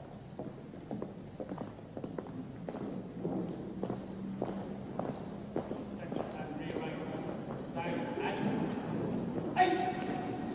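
Boot footsteps clicking at an uneven pace on a hard parade ground as the ranks are inspected, with faint voices behind them and a short call from a voice near the end.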